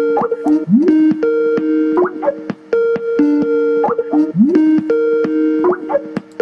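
A voice-call program's ringing tone: a short electronic jingle of steady tones and rising blips, repeating over and over. It is the sound of a call ringing while a dropped participant is being called back into the conference.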